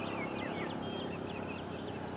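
Birds chirping: many short, quick calls overlapping one another, over a faint low background rumble.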